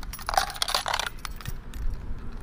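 A quick burst of light clicking and rattling, about a second long, from an RC car or its remote being handled to switch it on.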